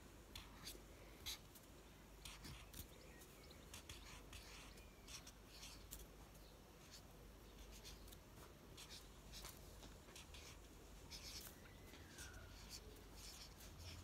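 Faint scratching of a highlighter writing on notepad paper in short, irregular strokes, over quiet room tone.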